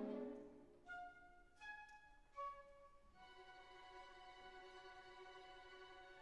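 Quiet orchestral classical music. A chord dies away at the start, three soft separate notes follow, and a soft held chord sets in about halfway through.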